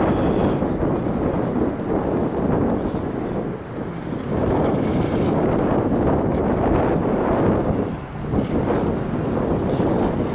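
Wind buffeting the microphone: a dense, low rumbling noise that swells and dips in gusts, with a couple of brief lulls.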